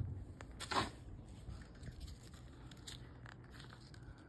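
Faint handling noise of a crumpled paper ball being picked up and handled, crinkling, with one brief louder sound just under a second in.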